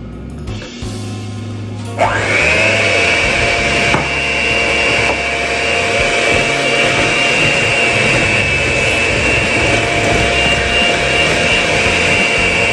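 Electric hand mixer switched on about two seconds in, its whine rising briefly as it spins up, then running steadily as it beats flour and milk into cake batter in a glass bowl.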